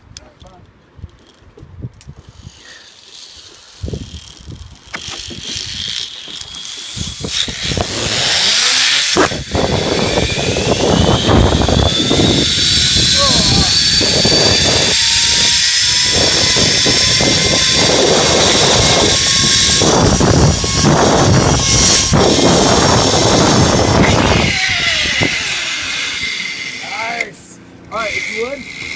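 Zipline trolley pulleys running down a steel cable: a whine that rises in pitch as the rider picks up speed, under loud wind rushing over the microphone. Both fade as the trolley slows and stops near the end.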